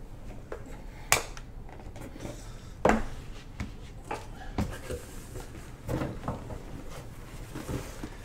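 Handling noise as trading cards and card holders are moved about on a table: a few scattered light clicks and knocks, the loudest about three seconds in.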